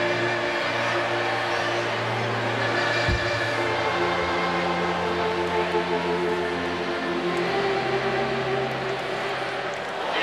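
Music played over a stadium's sound system: long held chords that change every few seconds, over the steady noise of a large crowd. There is a single short knock about three seconds in.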